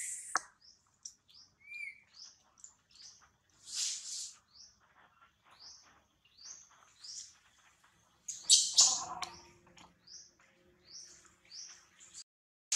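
Bird chirps: short, high notes that rise in pitch, repeated about twice a second. Two louder, noisier bursts break in, about four seconds in and about eight and a half seconds in.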